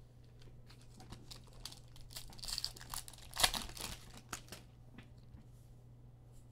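The foil wrapper of a Legacy football card pack being torn open and crinkled: a run of crackles, loudest about three and a half seconds in, then quieter as the cards come out.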